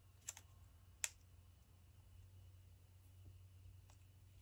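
Two short, light clicks of hands handling a rubber stamp on a clear acrylic block, one about a third of a second in and one about a second in, with a fainter tick near the end; otherwise near silence.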